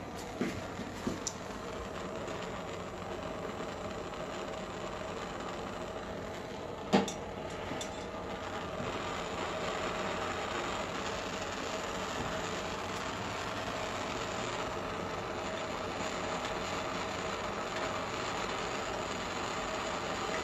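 Handheld propane torch burning with a steady hiss as its flame heats a colander's handle joint for soldering, growing a little louder about eight seconds in. A single sharp click about seven seconds in.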